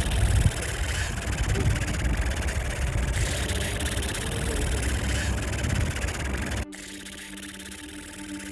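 Helicopter sound effect: rotor beating over a running engine, which cuts off suddenly about two-thirds of the way through, leaving a faint steady hum.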